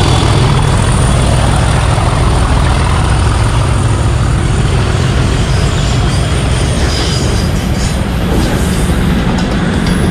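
Direct Rail Services Class 37 diesel locomotive passing close by with a train of rail crane vehicles. Its English Electric V12 engine gives a heavy low drone over the continuous rumble of wheels on the rails, with faint wheel squeal. The engine sound eases after the first few seconds as the yellow crane vehicles roll past.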